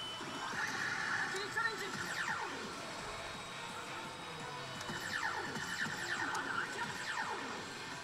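Pachislot machine playing its electronic game music and effects during a bonus rush, with gliding, sweeping effect sounds.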